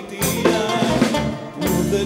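Live Greek band playing an instrumental passage between sung lines: a bouzouki melody over electric bass, drum kit and a goblet drum keeping a steady beat.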